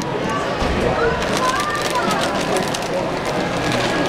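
Indistinct background voices of other people over a steady wash of crowd noise.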